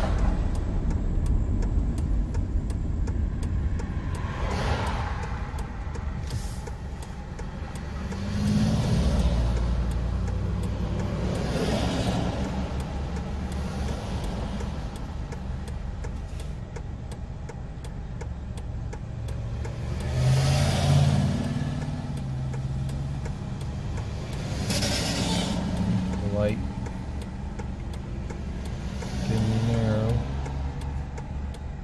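Car cabin noise while driving: a steady low road-and-engine rumble, swelling louder several times as the engine picks up or other traffic goes by.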